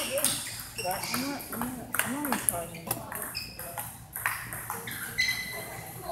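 Table tennis balls striking the table and paddles: a scattering of sharp, irregular pings, one with a short ring about five seconds in. Voices are heard in the background.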